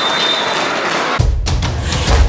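Steady stadium crowd noise, cut off about a second in by music with a heavy bass drum beat.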